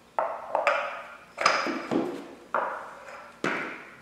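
Five sharp knocks, roughly a second apart, each ringing briefly, as a wheel is knocked into place on the pressure washer's axle.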